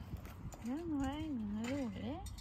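A person's voice, drawn out in a sing-song rise and fall for about a second and a half, with a few faint clicks around it.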